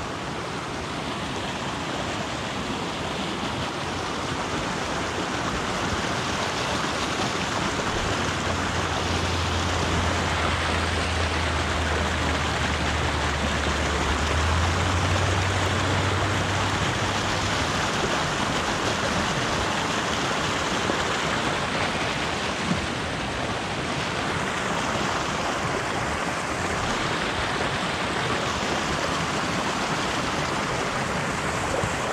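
Shallow, partly iced mountain stream rushing steadily over rocks. A low rumble joins it for about ten seconds in the middle.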